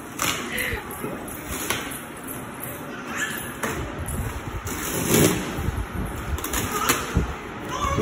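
Corrugated cardboard packaging being torn and pulled off a large parcel: irregular ripping and rustling, with a couple of heavier thumps in the second half.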